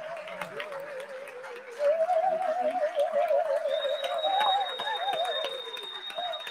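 A standing audience applauding with scattered claps. Over it runs a held mid-pitched note with strong, even vibrato that gets louder about two seconds in and splits briefly into two lines. A thin, steady high whistle joins near the end.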